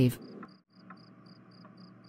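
Faint cricket chirping, short high chirps repeating evenly about four times a second over a faint steady background, as a night ambience track. A woman's voice trails off at the very start.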